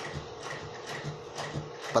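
Faint irregular mechanical clicking over a steady low hum.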